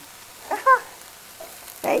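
Chopped onions sizzling in a hot skillet, cooked without oil and browning, as a wooden spatula stirs them; the sizzle is a steady, quiet hiss. A short voiced sound comes about half a second in, and a word near the end.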